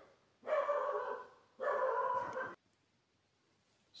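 A dog barking in two bouts of about a second each, the second following shortly after the first.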